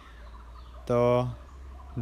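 A man's voice says a single drawn-out word, 'to' ("so"), about a second in. Otherwise there is only a faint, steady low hum.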